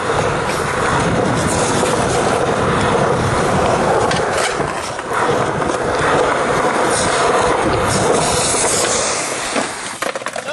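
Skateboard wheels rolling on smooth concrete, heard close up: a loud, steady rolling rumble with a few sharp clacks.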